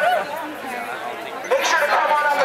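Crowd chatter, many overlapping voices, during a brief pause in a man's amplified voice over a PA and megaphone. The amplified voice comes back loud about one and a half seconds in.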